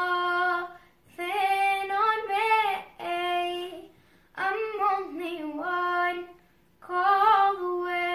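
A ten-year-old girl singing unaccompanied, in several held, melodic phrases with brief breaths between them.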